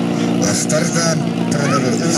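Portable fire pump's engine running steadily, with people shouting over it.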